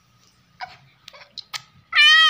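A baby's short, high-pitched squeals and giggles in a few quick bursts, then a much louder squeal starting right at the end.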